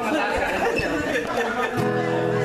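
Chatter of a group of people talking in a hall; near the end an acoustic guitar starts playing, with steady sustained chord tones.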